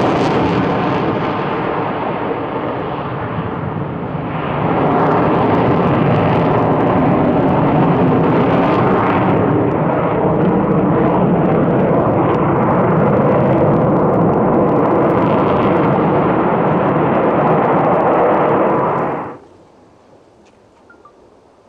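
Sukhoi Su-57 fighter's twin jet engines in afterburner during an aerobatic display, a loud steady roar. It eases off slightly for a couple of seconds, then swells again and carries on until it cuts off abruptly near the end.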